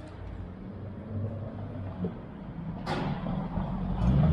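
Street traffic: the low hum of vehicle engines on the road, with a sharp click about three seconds in.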